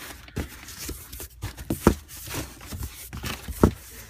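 Cardboard boxes and packaged firework tubes being handled and shifted: irregular rustling and scraping of cardboard with scattered sharp knocks, the loudest about two seconds in and again near the end.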